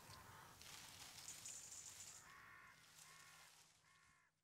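Faint bird calls, a short call repeated about every 0.7 s from about halfway in, over a soft hiss.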